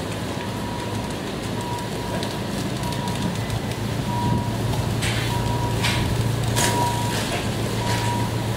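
Ambulance engine idling as a steady low hum, with a faint high beep coming and going about every half second and a few short rattles in the second half as the wheeled stretcher is moved.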